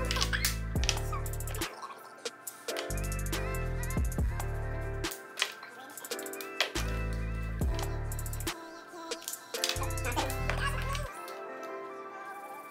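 Background music with a deep bass line in long repeating notes and a sharp percussive beat.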